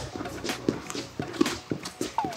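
Wrestling shoes stepping and shuffling on a wrestling mat as she circles in stance: a series of short, irregular soft taps and squeaks a few tenths of a second apart.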